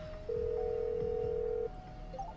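Telephone ringback tone: one steady beep lasting about a second and a half while an outgoing call rings through, before it is answered.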